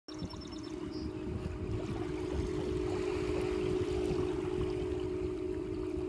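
Wind buffeting the microphone and seawater washing at the shore, a steady rumbling hiss, with a faint steady held low tone underneath and a few faint high pips in the first second.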